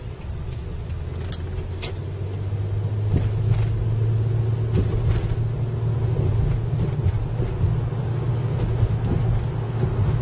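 Car engine and road noise heard from inside the cabin while driving: a steady low rumble that grows louder about three seconds in, with a couple of faint clicks in the first two seconds.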